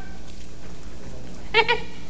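Steady low studio hum, broken about one and a half seconds in by a short, high-pitched vocal cry from a person.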